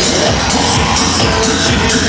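Live electronic dance music from a band on stage, loud and steady, recorded from within the audience.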